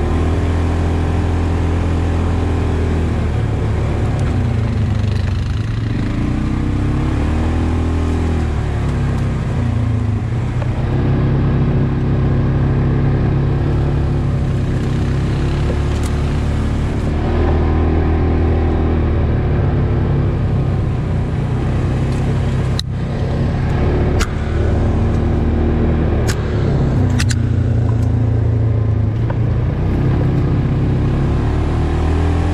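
Polaris Ranger 570 UTV's single-cylinder engine running while driving a dirt trail, its pitch rising and falling with the throttle. A few sharp knocks come in the second half, from the machine jolting over the rough trail.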